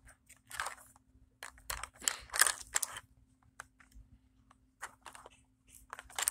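Plastic wrapping of a 5 Surprise Mini Brands capsule crinkling and crunching as it is pulled open by hand, in irregular bursts. The loudest bursts come about two seconds in, followed by a few faint clicks.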